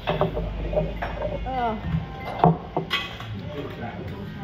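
Pub background of people's voices, with a few sharp clinks and knocks, the loudest about two and a half seconds in. A low rumble in the first second and a half comes from the phone being handled.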